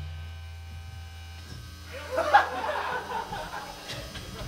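Low electric hum and buzz from the band's amplifiers left on after the song ends, dying away about three seconds in. Audience voices and laughter rise over it, loudest about two seconds in.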